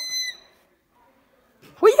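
A brief high, steady squeal that fades out in the first half-second, followed by a pause, then a person starts speaking near the end.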